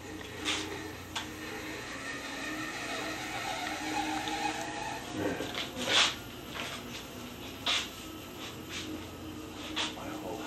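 VB36 wood lathe running with a huge big leaf maple root blank spinning at about 150 RPM. A steady hum, with several sharp knocks, the loudest about six seconds in.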